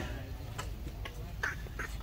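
Two short quack-like animal calls about a second and a half in, over a steady low rumble of background noise.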